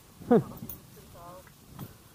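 Short vocal calls: one loud call that falls steeply in pitch about a third of a second in, then a fainter wavering call about a second later.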